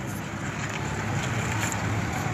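A car driving slowly away on the road, with a steady low engine rumble and tyre noise.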